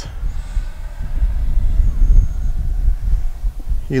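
Uneven low rumble of wind buffeting the microphone, the loudest sound throughout. Under it is the faint, steady whine of a distant Arrows RC L-39 Albatros 50 mm electric ducted-fan jet flying on 4S power.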